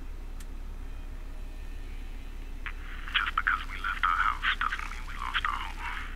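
A low hum, then about two and a half seconds in a thin, choppy crackle from a ham radio set's speaker that runs for about three and a half seconds: radio static with a muffled, garbled transmission.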